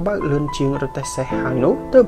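Narration voice speaking over background music.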